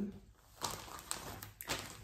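Faint rustling of a plastic zip-top bag holding a cross-stitch pattern and embroidery floss as it is handled and turned over, starting about half a second in, with a few light clicks.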